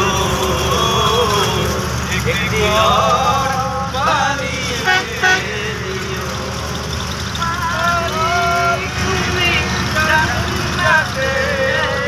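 Bus engine running with a steady low rumble, heard from inside the cabin, under men's voices.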